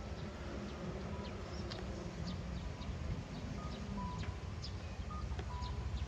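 Street ambience at a city intersection: a steady low rumble of traffic with scattered short, high chirps.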